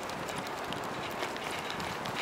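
Bicycle rolling over city pavement: a steady rolling hiss with frequent small, irregular clicks and rattles.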